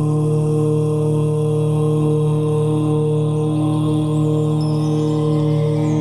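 A long chanted "Om" held as one steady drone note over devotional background music.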